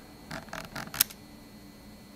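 Razer Basilisk V3 scroll wheel turned by a finger, with smart scrolling on so the wheel shifts between notched and free-spinning with scroll speed. There are a few soft rolling ticks, then one sharp click about a second in.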